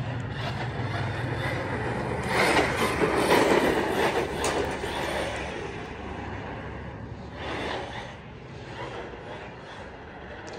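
Team Corally Kagama RC truck running on a 4S battery across asphalt: electric motor and drivetrain noise with tyre rumble, swelling about two seconds in and fading away in the second half as it drives off.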